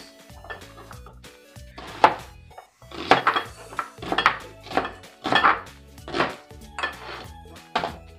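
Kitchen knife slicing a red onion on a cutting board: about nine crisp cuts, starting about two seconds in, each blade stroke tapping the board. Background music plays underneath.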